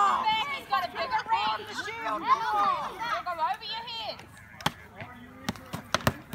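Children shouting and calling out across an open field, then several sharp whacks in the last second and a half: padded practice weapons striking shields and each other as the melee closes.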